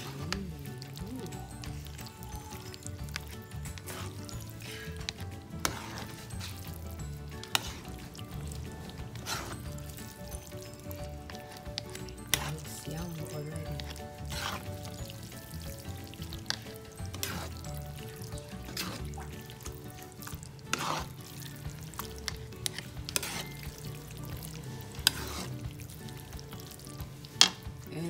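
A plastic spoon stirring and tossing spaghetti in tomato sauce in a pan. Wet stirring, with irregular sharp knocks of the spoon against the pan, over a low sizzle of the sauce cooking.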